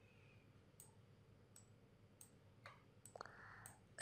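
Near silence with a few faint computer mouse clicks spaced out across the few seconds, and a soft brief rustle about three seconds in.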